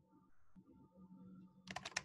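Typing on a computer keyboard: a quick run of keystroke clicks starting near the end, over a faint steady background hum.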